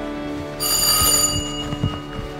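Background music with sustained notes. About half a second in, a bright bell-like chime strikes once and rings out for about a second. A few soft low thuds come near the end.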